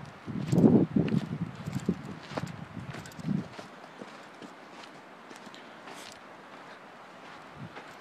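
Footsteps on loose volcanic cinders and lava rock, a run of uneven thuds and scrapes for the first few seconds, then growing faint with only a few light ticks.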